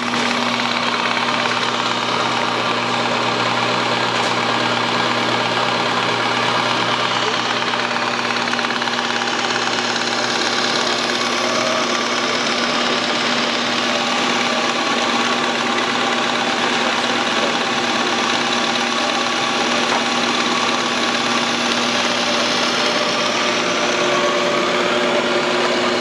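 Microgreens harvester running steadily, its cutting blade near full speed and its conveyors moving trays of pea shoots through: a constant mechanical hum with a few steady tones.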